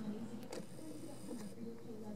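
Quiet room tone with camera handling noise: a few faint clicks and a thin high whine lasting about a second.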